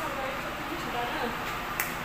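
A woman talking briefly, then one sharp click near the end.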